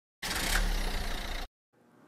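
A car engine running, starting abruptly and cutting off suddenly after about a second and a quarter.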